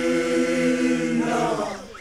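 Basotho initiates (makoloane) chanting together in unison, holding a long sung note that bends and trails away near the end.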